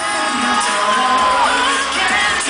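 Loud live pop dance music filling a concert hall, heard from among the audience, with high screams from the crowd; a long held high note bends upward about halfway through.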